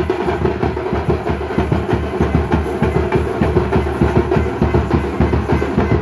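Several tamate frame drums beaten with sticks in a fast, dense, driving rhythm.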